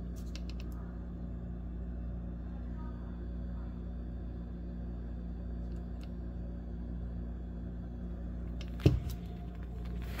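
A steady low hum runs throughout, with faint clicks. A single sharp knock comes about nine seconds in.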